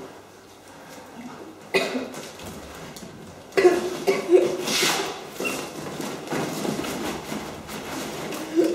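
Indistinct voices. A short sudden burst comes about two seconds in, and a longer, louder stretch of mixed voice sounds starts a little past halfway.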